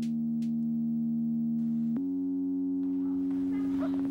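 Steady held electronic tone with a stack of overtones, stepping up to a slightly higher note about halfway through; faint scattered sounds join it near the end.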